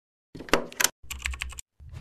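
Keyboard typing sound effect in a logo sting: two short runs of rapid key clicks, then a louder, deeper sound starting right at the end.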